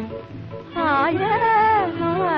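A woman singing a film song: after a short drop in the music, one held sung note begins about three quarters of a second in, swoops down and back up, and is held for about a second.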